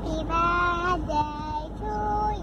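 A child's voice singing a birthday song in long held notes over a soft backing.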